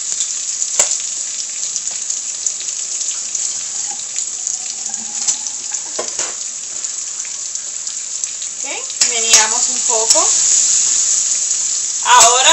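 Sofrito of onion, sweet pepper and seasoning frying in oil in a pot: a steady sizzle that grows a little louder near the end, with a single click about a second in.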